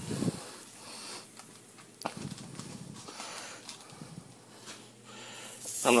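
Faint handling noise while the sandwiches are carried and set down, with a single sharp click about two seconds in. Near the end a hiss rises as the Reuben sandwiches meet the hot electric griddle and start to sizzle.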